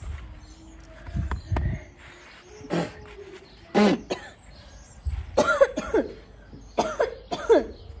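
A boy coughing repeatedly, about half a dozen short coughs, some with his voice in them, coming in quick pairs from a few seconds in to near the end.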